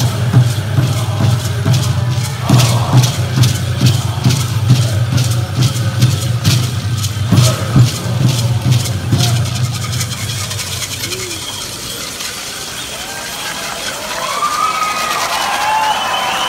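Pueblo buffalo dance song: a chorus of men singing over a steady drumbeat and the rattles of the dancers. The song ends about ten seconds in, and high calls and whoops from the crowd rise near the end.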